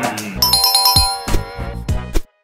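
A bright, chiming electronic jingle with a few sharp percussive hits, starting about half a second in, as a transition music sting; a brief spoken word just before it.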